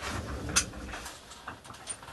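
Handling and movement noise as someone reaches across a desk for a battery: a low rumble with a few light clicks and knocks, the sharpest about half a second in.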